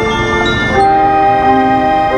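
Marching band playing loud, sustained wind chords; just under a second in, the chord slides into a new one and is held.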